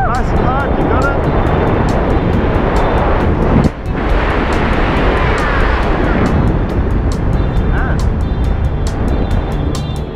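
Wind rushing over the camera microphone while the tandem pair fly under the open parachute, with background music with a steady beat laid over it. A short rising voice sound comes right at the start.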